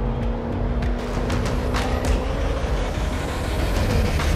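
Jaguar F-Pace SVR's supercharged 5.0-litre V8 running steadily as the SUV drives, under background music with a few sharp hits.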